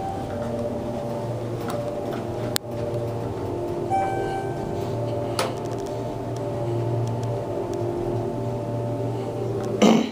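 Schindler 300A hydraulic elevator riding, heard from inside the cab: a steady low hum with a few held tones over it. Two sharp clicks come through, about a third and about halfway through.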